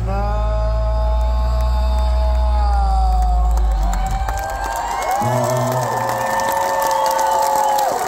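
A live rock band's closing note held over heavy bass, the bass cutting out about four seconds in, then a second long held tone as the festival crowd cheers and whistles.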